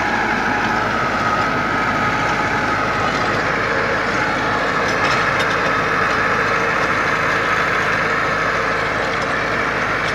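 Massey Ferguson 385 tractor's four-cylinder diesel engine running steadily under load while driving a PTO rotavator that churns the soil, an even drone with a steady high whine on top.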